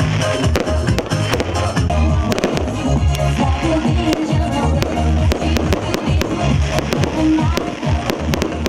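Fireworks popping and crackling over loud music with a heavy, steady beat.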